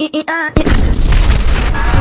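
A voice laughing in short, repeated syllables, cut off about half a second in by a sudden, loud boom sound effect that carries on as a deep, noisy wash.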